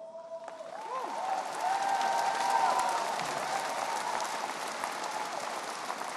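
Arena crowd applauding, swelling over the first couple of seconds and then easing off slightly.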